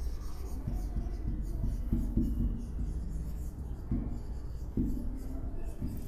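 Marker pen writing on a whiteboard: a run of short, irregular strokes and scrapes as a word is written out by hand, over a faint low hum.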